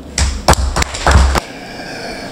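Microphone handling noise: a quick cluster of thumps and knocks with a low rumble, lasting about a second.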